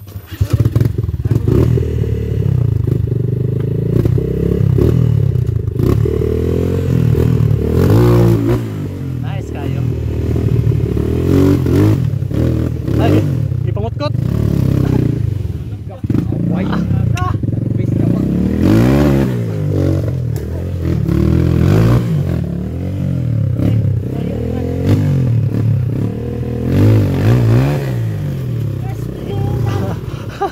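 Enduro dirt bike engine revving hard under load on a steep rocky climb, the revs rising and falling again and again as the throttle is worked.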